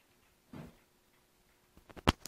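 Near silence, with a soft dull bump about half a second in and a few faint clicks near the end.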